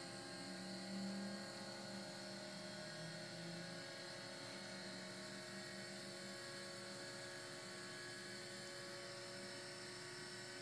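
Faint, steady electric hum and whine from a powered-up Cessna 152 instrument panel, its electrically driven turn coordinator gyro spinning at speed, heard as several steady tones at once.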